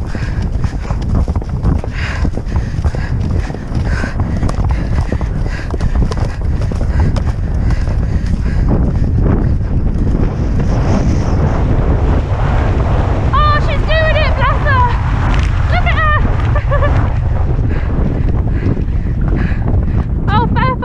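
Wind buffeting a head-mounted action camera's microphone at a gallop, a steady loud rumble, with the horse's galloping hoofbeats underneath. High-pitched voice calls come through several times in the second half.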